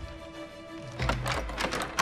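Background music with steady held notes, joined about halfway by a run of soft taps.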